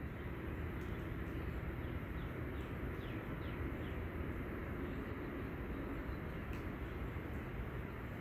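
Steady low outdoor background rumble, with a run of faint, short, falling chirps about three seconds in.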